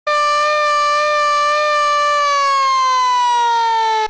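Hand-cranked siren wailing loudly at a steady pitch. In the second half its pitch slides down as the cranking stops and the rotor winds down.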